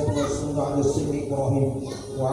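A man's voice reciting in long, evenly pitched phrases, in the manner of Arabic prayer recitation.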